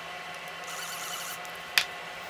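Faint steady room hum with one short, sharp click near the end from handling the night-vision parts and tools on the workbench.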